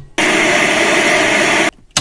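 A burst of loud, steady static hiss, like an old TV set between channels. It cuts off abruptly after about a second and a half, and a short click follows near the end.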